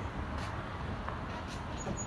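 Steady low rumble of street traffic on a small-town main street.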